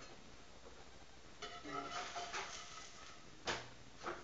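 A metal spatula knocks once, sharply, against a cast-iron skillet about three and a half seconds in; the rest is low kitchen background with faint quiet talk.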